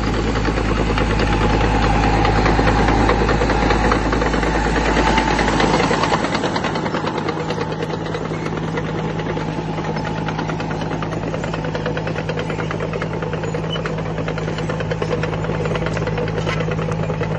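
Same Krypton 115M tractor's diesel engine running steadily under load as it pulls an eight-disc plough through the soil, with a dense, fast clatter throughout. The deep low rumble drops away about six seconds in.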